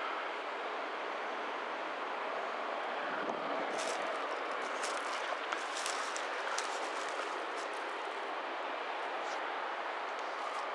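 Steady outdoor background noise with no engine running, and a few faint crackles between about four and seven seconds in.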